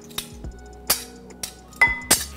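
Three sharp clinks of a metal garlic press and a knife against a ceramic bowl as pressed garlic is scraped off, under faint background music.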